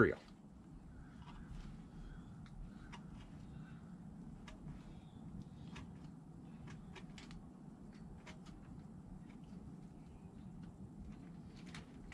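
A hand carving gouge with a rounded, U-shaped blade cutting small shavings from a wooden bear's eye socket: faint, irregular clicks and scrapes of the blade in the wood over a low steady background.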